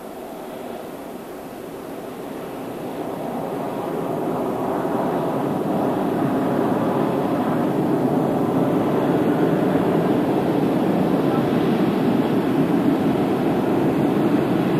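Steady engine noise that grows louder over the first five or six seconds and then holds level.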